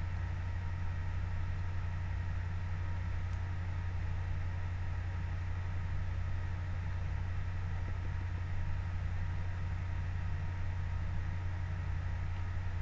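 Steady low hum with faint hiss, unchanging: the background room tone of a small room picked up by the microphone while no one speaks.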